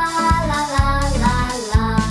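Children's song: a child's voice singing "fa la la la la" over backing music with a steady beat.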